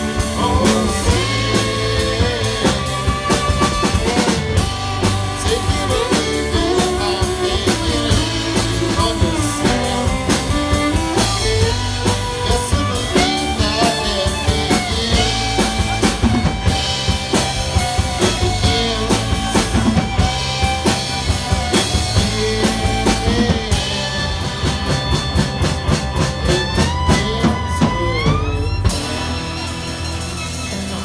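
Live rock band playing an instrumental passage with fiddle, acoustic and electric guitar and a drum kit. Near the end a rising slide in pitch leads into a sudden drop, and the band plays on quieter.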